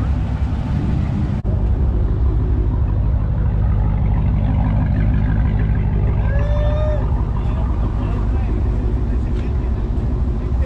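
Car engines running at idle, a steady low rumble, under the chatter of people talking. A short high-pitched tone sounds about six and a half seconds in.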